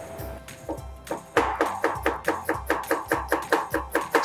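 Chinese cleaver chopping shallots on a wooden cutting board in fast, even strokes, about six a second, starting about a second in, over background music.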